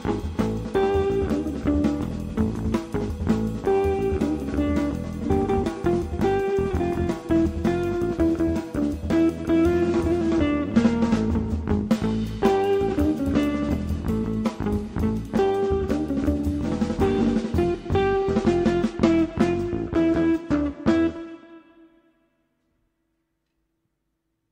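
Live jazz trio of electric guitar, electric bass and drum kit playing a tune, which stops about three seconds before the end.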